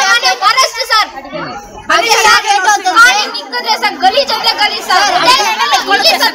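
Several young women talking over one another in raised, agitated voices, with a brief lull about a second in.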